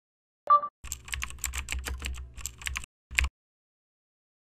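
A short beep, then about two seconds of rapid, irregular keyboard typing clicks over a low hum, and one last click about three seconds in.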